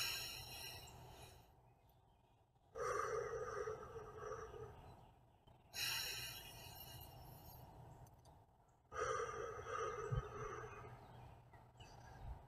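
A man taking slow, deep breaths in and out as a relaxation exercise. Each breath is a soft rush of air, coming about every three seconds.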